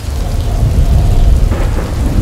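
Loud low thunder rumble over steady rain, the rumble coming in suddenly at the start and rolling on.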